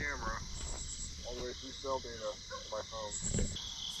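A man's voice played back faintly from a phone speaker a couple of seconds late: the Reolink security camera's microphone audio relayed over cell data to the phone app. Crickets chirr steadily throughout.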